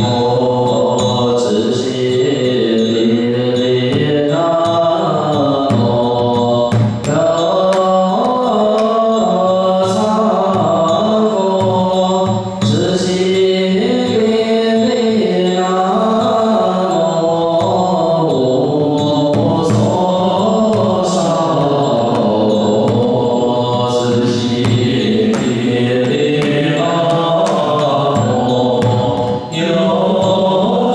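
A group of voices chanting a Buddhist liturgy in slow, melodic lines held on long notes. It is kept in time by a steady beat on a large Dharma drum struck with sticks, with a louder accented strike every few seconds.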